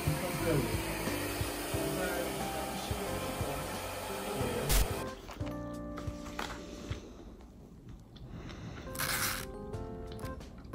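Background music over a handheld hair dryer blowing, which cuts off suddenly about five seconds in; the music carries on quieter, with a brief noisy burst near the end.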